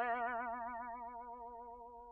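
A single twanging 'boing' sound effect: one pitched note with a rapidly wavering pitch that fades away slowly over the two seconds.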